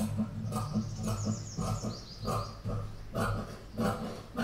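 Tailoring scissors snipping through blouse fabric laid flat on a table, a run of short irregular cuts about every half second. A high falling chirping trill sounds in the background for about two seconds near the start.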